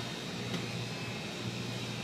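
Steady workshop background noise: an even hiss with a low electrical hum underneath.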